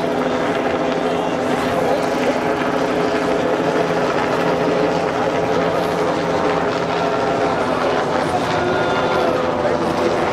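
Helicopters buzzing overhead, a steady hum made of several held tones, under the chatter of a walking crowd.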